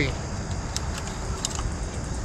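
Steady outdoor background noise with three faint light clicks in the middle, from gear being handled by hand on the ground.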